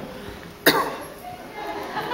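A single sharp cough about two-thirds of a second in, over faint talking.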